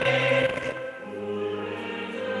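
A choir singing slow, sustained church music. Just under a second in, the chord changes and the singing grows softer.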